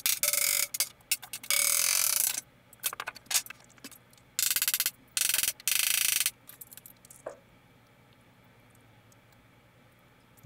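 Cordless drill run in short bursts of half a second to a second, about six times, stopping about six seconds in.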